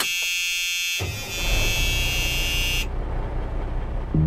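Electronic buzzing tone in the soundtrack, starting abruptly, with a low rumbling noise joining about a second in; the buzz cuts off suddenly a little before the end while the rumble carries on.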